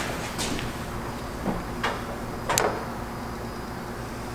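A few short knocks and scrapes of a plastic fuel pump sending unit being twisted and pulled loose in the opening of a McLaren MP4-12C fuel tank, a stiff, tight fit; the loudest comes about two and a half seconds in.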